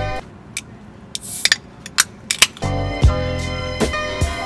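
Aluminium soda can handled on a stone ledge: a scattered run of sharp, light metallic clicks and taps over about two seconds, with a short rustle about a second in.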